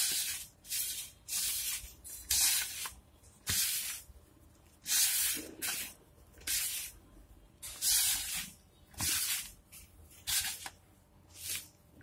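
Hands rubbing oil into a dry mix of flour, gram flour and semolina in a bowl: a rhythmic scratchy rustle of flour being rubbed and crumbled, roughly one or two strokes a second.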